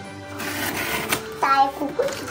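Cardboard box flaps being pulled and torn open by hand: a dry rustling scrape with a sharp snap about a second in.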